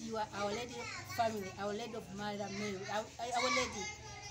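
A woman's voice in a lilting, partly sung delivery, with children's voices behind it.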